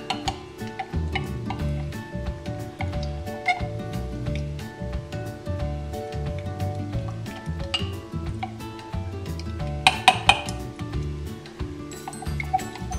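A metal stirring straw clinking repeatedly against a glass mug while stirring borax solution into glue as it gels into flubber, with a louder flurry of clinks about ten seconds in. Background music with a bass line plays underneath.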